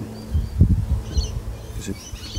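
Outdoor ambience: a few faint, short bird chirps about a second in, over low rumbling noise on the microphone.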